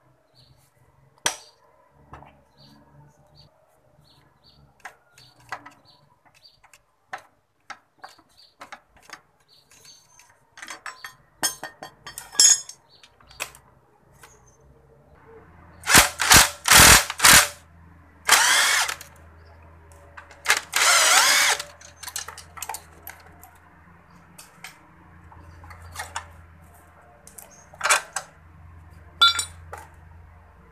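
Cordless impact wrench hammering in several loud bursts from about halfway through, undoing the bolts of a motorcycle's rear footrest bracket. Before that, light scattered clicks and taps of a socket wrench being fitted to the bolt.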